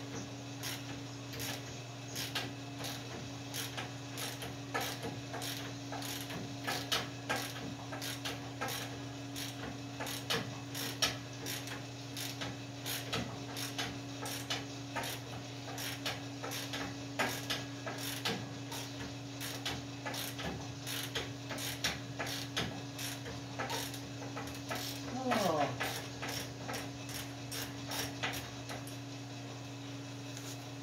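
Ratchet wrench clicking in irregular runs as a shackle bolt is turned, over a steady low hum. A brief falling squeak near the end.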